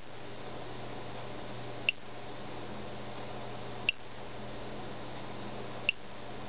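Short high-pitched electronic beeps, one every two seconds, over a steady low hum.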